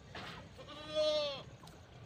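A single bleat from a farm animal, lasting under a second about halfway through, its pitch arching slightly and dropping away at the end.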